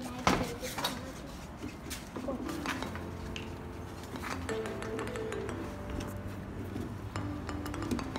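Scattered light clicks and metallic clinks around a small metal tray barbecue grill as it is lit, with faint music and voices behind.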